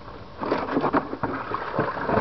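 Handling noise close to the microphone: irregular light knocks and rustling as things are moved about, starting about half a second in.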